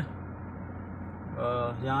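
Steady low hum of a stopped car with its engine running, heard inside the cabin. A man's voice starts speaking in the last half-second.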